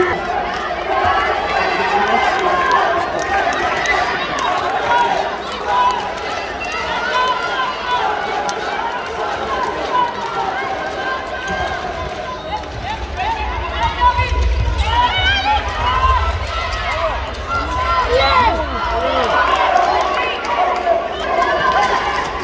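Indoor handball match in play: players' shoes squeaking on the court floor, with shouts and chatter from players and the small crowd.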